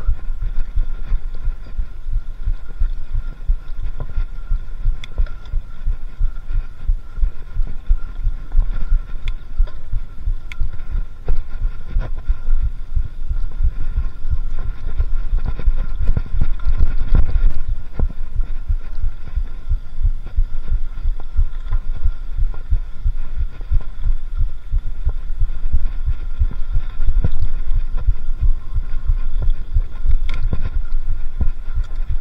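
Mountain bike ridden over a rough dirt trail, heard through a handlebar-mounted camera: a continuous low rumble packed with dense thumps and knocks from the bumps, a little heavier about halfway through.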